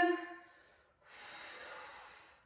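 A woman's audible breath, a soft breathy rush about a second and a half long, drawn while exercising hard with a resistance band; it follows the fading end of her spoken word.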